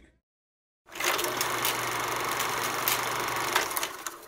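A steady, fast mechanical rattling buzz with a low hum under it, coming in after about a second of silence and cutting off shortly before the end.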